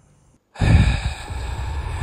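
Outdoor night ambience that cuts in abruptly about half a second in: a steady hiss with a heavy low rumble, loudest right at the onset.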